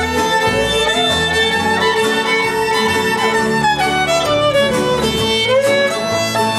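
Live bluegrass band playing an instrumental break: a fiddle leads with sliding notes that rise early on and fall back near the end, over upright bass and guitar.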